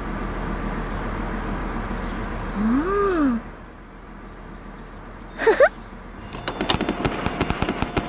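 Cartoon sound effects over a steady outdoor ambience: a short rising-and-falling tone about three seconds in and a quick squeak a couple of seconds later, then many small balls tumbling out of a dump-truck bed and bouncing, a fast irregular clatter of knocks for the last couple of seconds.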